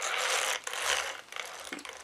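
The drivetrain of a shaft-driven 4WD RC buggy, its gears and differentials, rasping and clicking as the wheels are turned by hand. It comes in two short stretches, then fades off.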